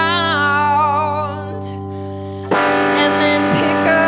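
Live rock band playing: a woman's held sung note with vibrato over distorted electric guitar and bass. The music drops back for about a second, then the full band comes back in suddenly and loudly about two and a half seconds in.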